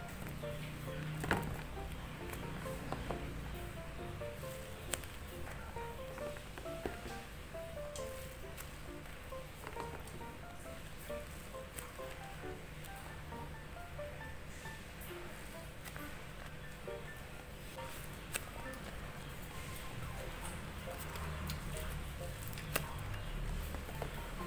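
Quiet background music of short, soft melodic notes. A few light crinkles and taps come through now and then as taped-paper squishies are handled and set into a plastic storage box.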